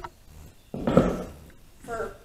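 A short piece of 2x4 lumber set down or dropped onto a pile of wooden blocks on an OSB sheet: one sudden wooden clatter that dies away within about half a second.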